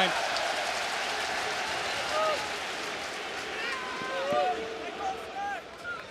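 Football stadium crowd noise: a broad roar that fades over the first few seconds, followed by scattered calls and shouts from the stands.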